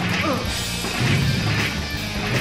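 Cartoon crash and clatter effects from a lurching mechanical contraption, with a falling pitch glide in the first half-second and a low rumble from about a second in, over background music.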